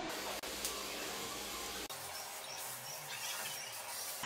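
Quiet steady room noise with a faint click about half a second in and a few faint high chirps in the second half.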